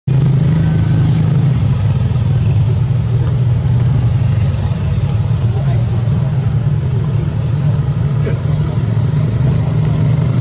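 Steady low hum of a motor vehicle engine running.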